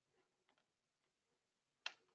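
Near silence, with a few faint ticks and one sharper click just before the end.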